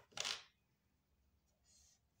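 A short, sharp scrape just after the start, then a faint, high, scratchy stroke of a felt-tip highlighter across paper near the end.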